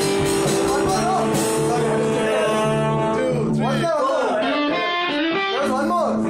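A small band playing in a room: guitar, bass guitar and alto saxophone holding long notes, with men's voices over the music in the second half.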